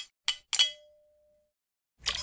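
Sound effect of a metal crown dropping and clattering to the floor: a few quick metallic clangs, the last one ringing on for about a second.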